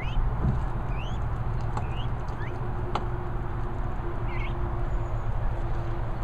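Peacock chicks giving a handful of short, rising peeps, spaced a second or so apart, over a steady low rumble.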